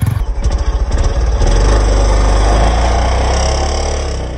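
Yamaha R15M's single-cylinder engine revving hard while the rear tyre spins on dusty ground in a burnout with traction control switched off. The engine climbs about a second in, is held high for about two seconds, then drops away near the end.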